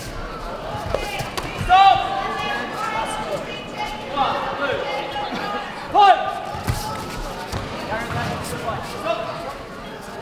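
Voices shouting across a large sports hall during a kickboxing bout, with two loud shouts about two and six seconds in, and scattered thuds of kicks, punches and feet on the mats.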